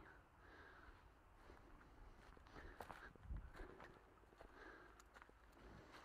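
Faint footsteps on leaf-littered ground, with scattered soft rustles and clicks and a low bump about three seconds in.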